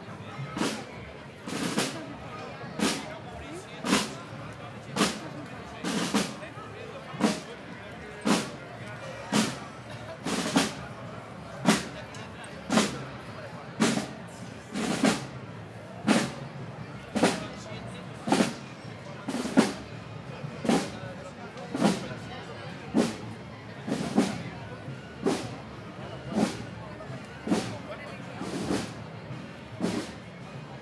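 Marching band percussion beating a slow, steady procession march, a bass drum and cymbal stroke about once a second, over a murmur of voices.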